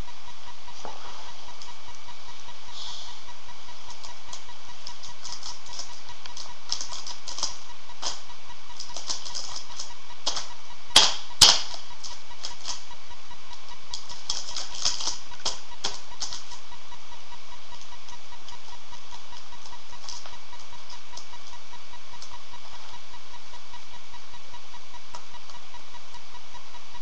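Laptop keys clicking as a toddler presses and slaps them: scattered light clicks through the first half or so, with two louder clacks close together about halfway through. A steady electrical hum runs underneath.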